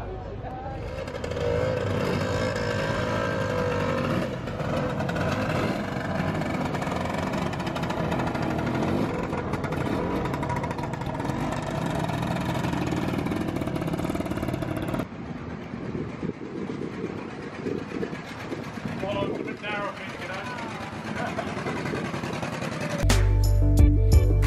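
Motor scooter and motorcycle engines running amid people's voices. About fifteen seconds in the sound cuts to quieter voices, and music with a heavy beat starts near the end.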